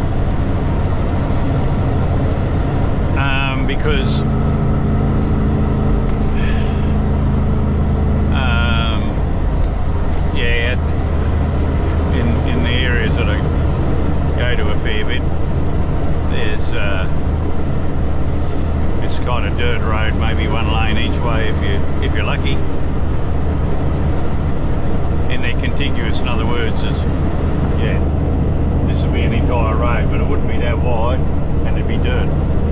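Heavy truck's diesel engine and road noise heard from inside the cab, a steady drone while cruising at highway speed. An extra held hum joins in from about four seconds to eight seconds in.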